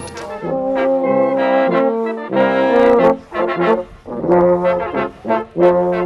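Brass music: trombones and trumpets playing held chords, with a short break a little past the middle.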